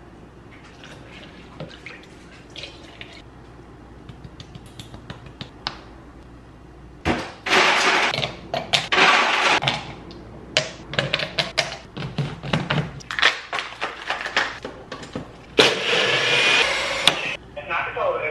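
Kitchen handling sounds from making a protein shake: sharp knocks and clicks of plastic blender cups, lids and scoops, and loud noisy stretches of pouring. A NutriBullet personal blender runs briefly near the end.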